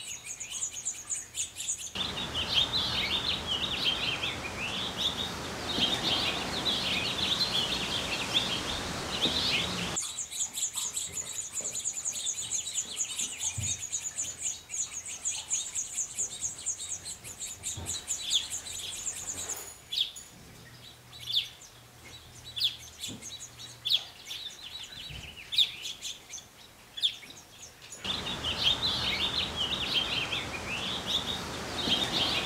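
House finches chirping at the nest: the adults' twittering calls and the nestlings' high, rapid begging calls while being fed. The chirping runs on in several stretches that switch abruptly between a fast, even, very high trill and lower, irregular twittering.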